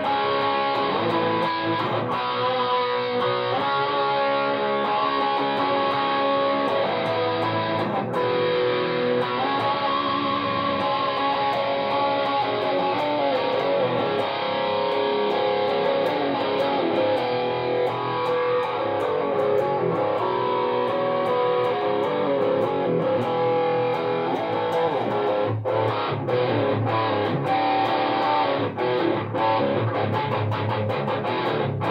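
Ibanez RG2EX2 electric guitar in drop C sharp, played through an Insane Distortion pedal with its tone turned down a tad, into a Bogner Ecstasy Mini amp and Harley Benton 1x12 cab: continuous heavily distorted riffing. Near the end the riff breaks into short, stop-start hits.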